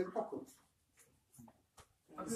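A man's voice trailing off in the first half second, then near silence with three or four faint short clicks.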